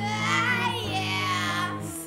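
Multitracked a cappella female voices singing. Low notes are held steadily under a higher line that slides in pitch, and the low notes break off at the very end.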